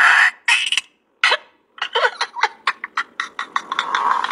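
A woman laughing. A few short bursts come in the first second, then, after a brief pause, a fast string of short, repeated bursts of laughter runs on.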